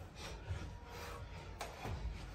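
Bare feet thumping and scuffing on a carpeted floor as several people step together in a low crouched walk, with a sharp click about one and a half seconds in.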